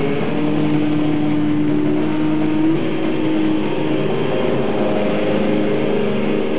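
Heavy metal band playing live, with distorted electric guitars holding long sustained notes and chords. One held note shifts in pitch about two and a half seconds in.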